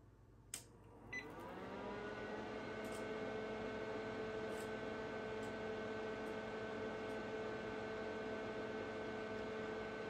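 HP 3585B spectrum analyzer switched on: a click from the power switch about half a second in, then the instrument's fan spins up, its hum rising in pitch for about a second before settling into a steady hum made of several tones.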